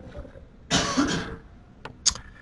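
A single cough about halfway through, followed near the end by a faint click.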